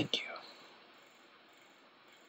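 A voice finishing the words "thank you", then near silence: faint room tone.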